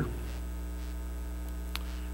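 Steady low electrical mains hum from the sound or recording system, with one faint click near the end.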